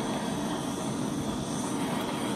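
Electric heat gun running, its fan blowing a steady rush of air. It is aimed at wet acrylic pour paint on small canvases to bring air bubbles to the surface and pop them.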